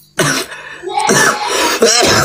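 A man coughs and clears his throat between sung lines: a short rough burst just after the start, then a longer rasping throat-clear.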